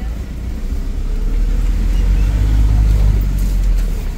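Motorcycle engine running while riding along, under a heavy low wind rumble on the microphone that swells about three seconds in and eases near the end.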